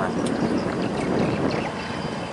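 Loaded steel container barge under way close by: its engine running and water rushing along the hull, a steady noise.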